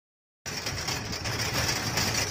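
Low, steady mechanical rumble of a moving vehicle, with a continuous high-pitched hiss over it, starting abruptly about half a second in.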